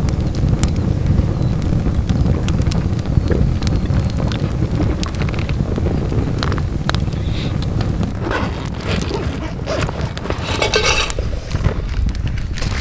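Wood fire crackling in a steel mesh fire pit, with many short scattered pops, over a steady low rumble of wind on the microphone.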